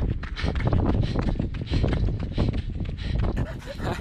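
Wind buffeting the microphone of a handheld camera, with a runner's rhythmic footfalls on a gravel road and hard breathing. It cuts off abruptly about three seconds in, giving way to quieter car-cabin sound.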